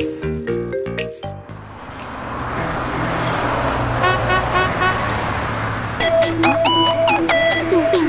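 A short stepped synth jingle, then a vehicle engine sound effect that swells for a few seconds. An upbeat electronic music intro starts about six seconds in.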